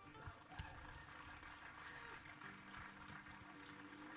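Near silence after the music stops: faint room tone with a few soft knocks.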